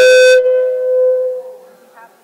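PA system feedback: a loud, steady howl that swells up, peaks harshly at the start, then fades out over about a second and a half.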